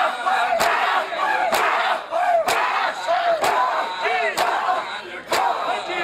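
Crowd of men doing matam: bare hands slapping bare chests in unison, a sharp slap just under once a second, under loud massed shouting and chanting.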